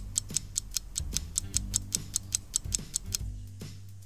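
A rapid clock-ticking sound effect of about six even ticks a second, stopping a little before the end, over quiet background music.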